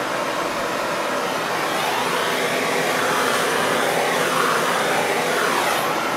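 Handheld heat tool running with a steady rushing noise, played over freshly poured epoxy resin to draw out the bubbles.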